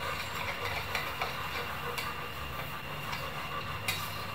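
A metal spoon stirring instant yeast into warm water in a bowl: a soft, steady swishing with a few light clicks of the spoon against the bowl.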